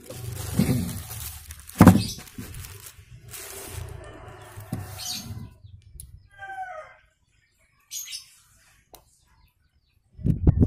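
Handling rustle of a plastic mailer bag and a flexible magnetic pickup tool being moved about, with a sharp knock about two seconds in. A brief bird chirp of a few quick gliding notes follows about six and a half seconds in, then it goes nearly silent.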